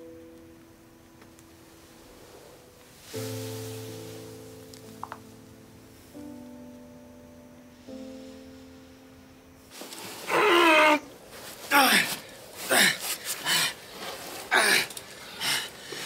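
Soft, slow piano chords for the first ten seconds or so. Then loud, ragged panting and groans of effort from men struggling through a cave passage, one of them injured.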